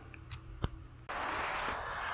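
Near silence with a single faint click, then about a second in a steady soft hiss of quiet forest ambience begins.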